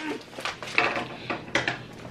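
Plastic packaging crinkling and crackling in irregular small clicks as presents are handled and unwrapped.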